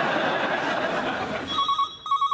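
A steady wash of noise fills the first second and a half. Then a telephone starts ringing: an electronic warbling ring in the British double-ring pattern, two short bursts close together.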